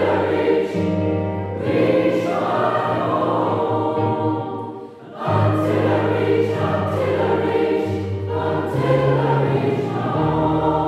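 Large mixed choir of men's and women's voices singing together in sustained, held chords. The singing breaks off briefly about five seconds in, then the next phrase begins.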